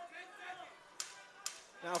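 Two sharp smacks about half a second apart, from blows landing in a fighters' clinch.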